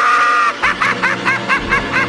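A person laughing in high, squealing bursts: a long squeal held at the start, then a quick run of about seven short 'ha's a second.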